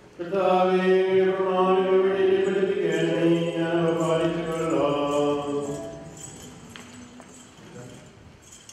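Sung liturgical chant: voices holding long, steady notes that change pitch only a few times, then dying away about five or six seconds in.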